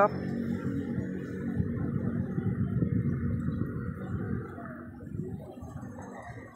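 Background murmur of indistinct voices, with faint music that fades out soon after the start.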